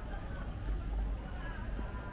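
Pedestrian-street ambience: faint, indistinct voices of passers-by over a steady low rumble.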